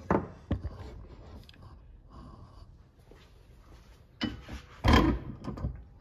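Steel shovel being shifted about in a bench vise: a sharp click at the start, then two heavy clunks about four and five seconds in, the second the loudest.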